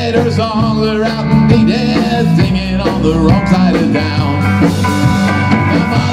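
A rock band playing live: electric guitar, electric bass and a drum kit together at a steady loud level.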